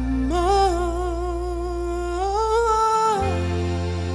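A male singer's wordless vocal line, a held, wavering tone with vibrato lasting about three seconds, over sustained keyboard chords and bass in a slow ballad. The bass drops out briefly near the end of the vocal phrase.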